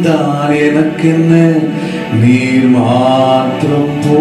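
A man singing a Tamil Christian worship song through a handheld microphone, drawing out long held notes that slide up and down in pitch.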